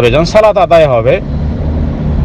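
A man speaking for about a second, then a pause in which only a steady low background rumble is heard.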